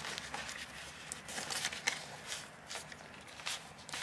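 Faint rustling and light handling noises, with a few soft scattered clicks, as hands rummage inside a zippered fabric carry bag.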